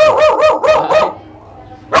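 A small dog barking at the crate bars, a quick run of about five short barks in the first second.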